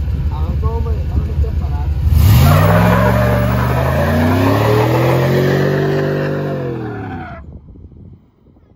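Chevrolet S10 pickup's engine idling, then revving hard from about two seconds in as the rear tires spin and smoke in a burnout. The engine note climbs steadily as the truck pulls away, then fades near the end.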